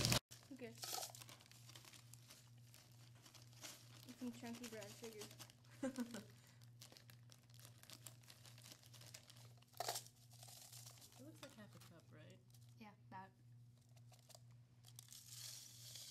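Faint crinkling and rustling of a plastic zip-top bag of brown sugar as it is handled and worked open, with a few short sharper crackles, over a steady low hum.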